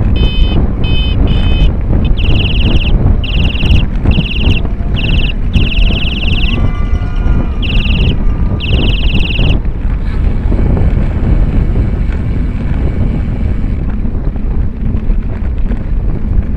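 Wind rushing over a moving camera's microphone, a steady loud rumble. Over it, during the first ten seconds or so, a series of short, shrill, pitched blasts comes in bursts, some brief and some about a second long.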